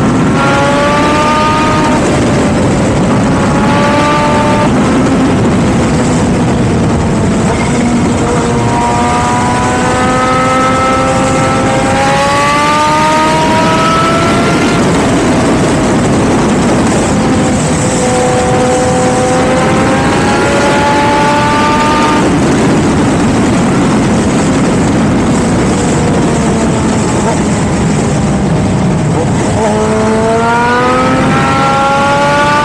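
Motorcycle engine pulling hard on a twisty road, its pitch climbing as it accelerates and dropping back at each gear change several times, under heavy wind rush on the microphone.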